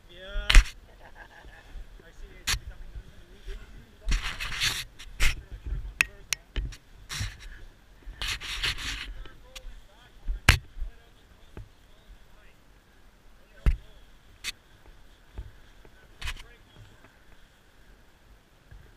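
Irregular sharp clicks and knocks with two short bursts of rustling, a rider moving about and handling gear beside a parked motorcycle whose engine is not running.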